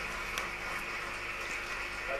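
Room tone: a steady hiss with a low hum and a few faint clicks.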